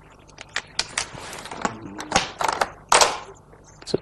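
Go stones being placed and moved on a large wall-mounted demonstration board: a series of sharp, irregular clicks, with a couple of short swishes of stones sliding across the board.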